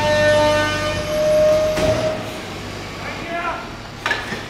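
A vehicle horn held in one long steady blast over the running engine of a garbage truck in a narrow street; the horn stops a little after two seconds in.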